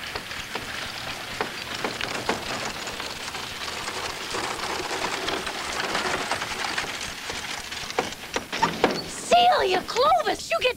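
Horse-drawn buggy rolling in over a dirt yard: a steady gritty crunch of wheels and hooves with scattered sharp knocks, growing louder toward the end, where a voice starts.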